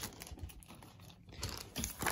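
Faint, irregular crinkling of a thin plastic bag holding a model kit's clear plastic parts as it is handled.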